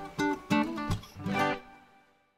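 Background music: an acoustic guitar strums a few chords, which ring and then die away to silence near the end.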